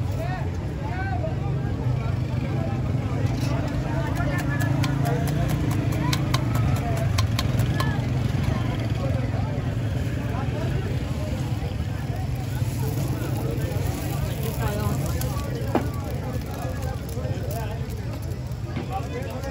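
Busy street-food stall ambience: overlapping crowd chatter over a steady low hum, with scattered sharp metallic clicks of a spatula on a flat iron griddle, most of them in the first few seconds.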